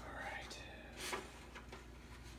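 Faint rustle of a sheet of paper being handled and lowered into a stainless steel pot, with one short crisp rustle about a second in.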